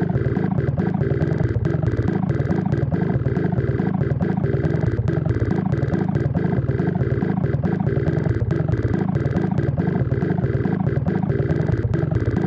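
Sparta remix music: a harsh, heavily effected sample loop pulsing rapidly over a steady drone, held at an even loud level.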